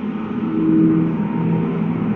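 Dark, low rumbling space drone: black-hole sound design with steady low tones held over a dense rumble, the pitch of the held tone dropping partway through.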